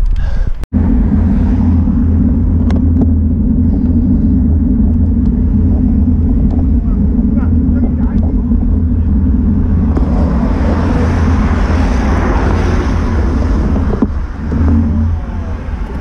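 Wind buffeting an action camera's microphone on a moving road bike: a heavy, steady low rumble. A broader hiss swells from about ten seconds in and eases off near the end as the bike slows to a stop.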